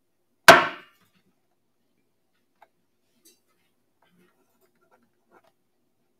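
Auctioneer's gavel struck once on the wooden rostrum: a single sharp knock with a brief ring, marking the lot as sold. A few faint small taps follow.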